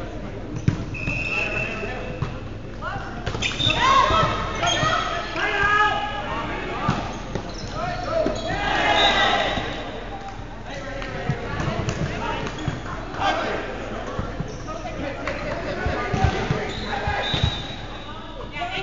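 Indoor volleyball being played in a large gymnasium: repeated ball hits and bounces ring off the hall, with players calling out and shouting. The voices are loudest about four seconds in and again around nine seconds.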